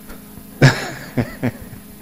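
Brief laughter: a breathy burst of laughing about half a second in, followed by two short chuckles.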